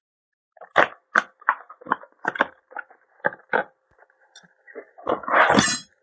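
A small cardboard box being opened and handled, with a string of short sharp clicks and taps, then a longer rustle near the end as small plastic bags of mounting hardware slide out of it.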